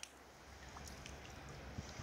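Near quiet: a faint low rumble with a few soft ticks, as a wet pond net is handled and picked through.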